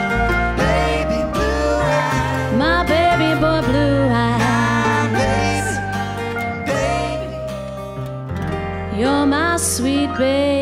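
Live acoustic band music in a slow song: acoustic guitar, keyboard and bass under a melody line that bends and glides like a singing voice.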